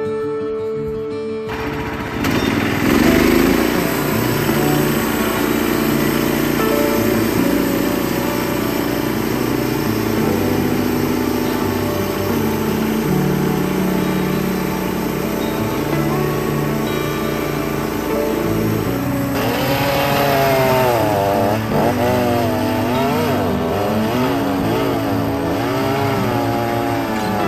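A portable band sawmill's gasoline engine starts running steadily under cutting load about a second and a half in, over background music. Its pitch wavers up and down in the last several seconds.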